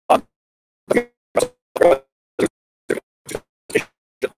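A man's voice coming through a video call in short clipped fragments, about two a second with silence between them, too broken to make out words: the call's audio is breaking up.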